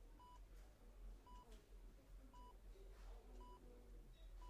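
Hospital patient monitor beeping faintly: four short, even beeps about a second apart, over a faint low hum.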